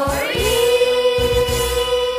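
A children's choir singing with accompaniment, the voices sliding up into one long held note.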